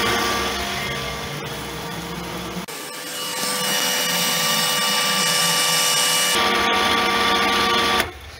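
Pool filter pump's electric motor running, switched on from the timer's manual setting: a steady hum with several constant whining tones. The sound shifts in tone for a few seconds in the middle, and it cuts off suddenly at the very end as the pump is switched off.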